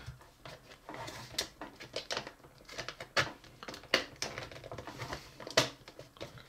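Hard plastic Potato Head toy parts clicking, tapping and rubbing as a piece is forced into a tight hole in the hollow plastic body, with irregular sharp clicks a second or so apart.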